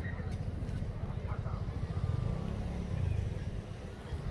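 Wind buffeting the microphone of a handheld camera: a steady low rumble that rises and falls throughout.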